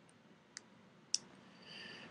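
Two computer mouse clicks about half a second apart, the second louder.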